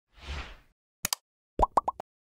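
Animation sound effects for a pop-up like button: a short whoosh, a quick double mouse click about a second in, then three quick pops close together near the end.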